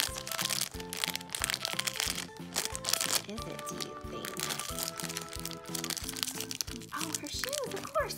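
A crinkly wrapper being torn open and crumpled by hand, busiest in the first few seconds. Background music with a steady beat plays underneath.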